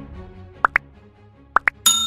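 Faint background music under two pairs of quick rising pop sound effects, about a second apart, then a bright bell ding near the end: the sound effects of an on-screen like-and-subscribe button animation.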